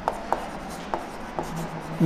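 Chalk writing on a blackboard: four short, sharp taps of the chalk against the board over two seconds, with faint scratching between them.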